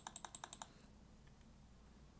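Rapid computer mouse clicks, about eight a second, stopping about two-thirds of a second in, followed by near silence.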